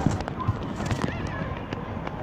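Handling noise of a phone being turned round in the hand to film its user, with scattered knocks and rubbing over steady outdoor background noise.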